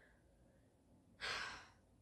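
A woman's single breathy sigh about a second in, short and fading out.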